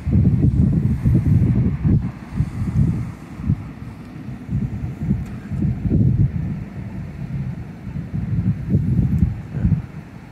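Wind buffeting the microphone: a low, gusting rumble that rises and falls irregularly throughout.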